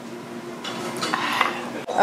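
Light clinks and knocks of tableware (dishes, glass and cutlery) over low restaurant room noise.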